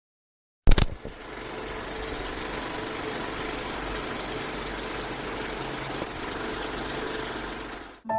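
A sharp click, then a steady mechanical running noise, a dense rattling hum at an even level that fades out near the end.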